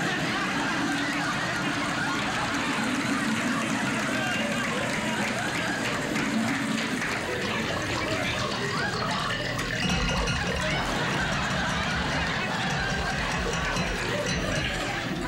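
Studio audience laughing in one long, unbroken wave, swelling again about ten seconds in.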